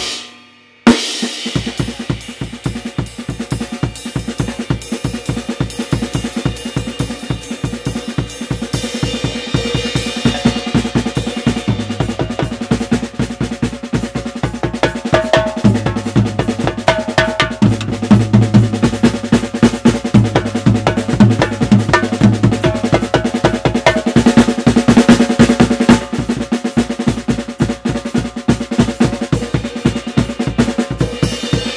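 Drum kit with Sabian cymbals played with sticks: fast, dense snare and bass drum strokes mixed with cymbal hits. The playing drops out at the very start and comes back in with a loud hit about a second in, then runs on without a break.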